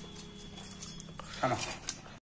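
Faint pouring of liquid from a steel jug into a small steel bowl, with a short spoken word near the end.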